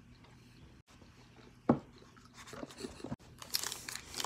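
Close-up chewing of a gummy marshmallow pop. Quiet at first, then one sharp, loud smack just under two seconds in, followed by a run of crackly, sticky mouth sounds.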